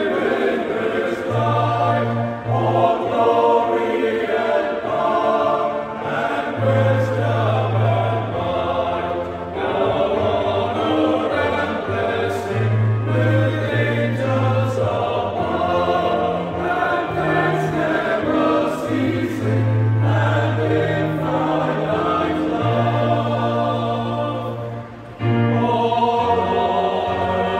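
Men's choir singing a hymn in parts, the low voices holding long notes beneath the melody, with a short break near the end before the singing resumes.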